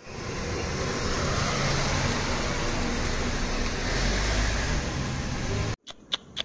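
Steady motor vehicle noise: an engine running close by, with a low rumble under a wide hiss of road noise. It cuts off suddenly near the end.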